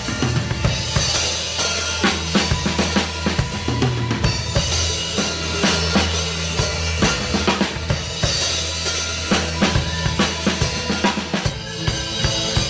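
A drum kit played with SparxStix light-up drumsticks: bass drum, snare and cymbals in a busy groove, along with a recorded song whose steady bass line sounds under the drums.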